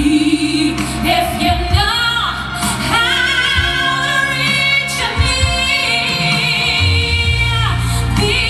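A woman singing a Romani song live into a microphone over instrumental backing. After a few shifting notes she holds one long note with vibrato from about three seconds in until near the end.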